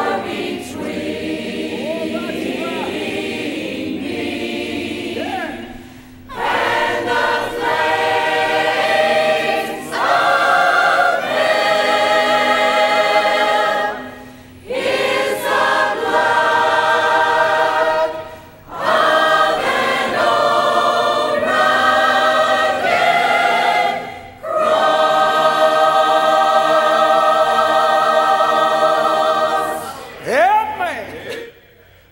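Church choir of mixed women's and men's voices singing in phrases separated by short breaths, the final chord held for several seconds.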